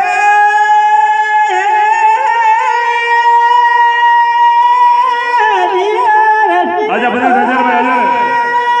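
A man singing Teja gayan, the Rajasthani folk devotional style, into a microphone: one long high note held steady for about five seconds, then a wavering, ornamented phrase and another held note near the end.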